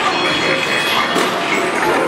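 Busy arcade din: game machines' electronic sounds and music mixed with crowd noise, with a high steady electronic tone for about the first second.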